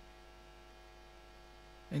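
A faint, steady, low electrical mains hum, with thin steady tones running above it.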